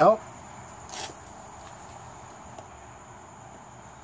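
A short scuff about a second in as the DynaPlug plug is worked into a puncture in a motorcycle's rear tire tread, over a steady faint hiss.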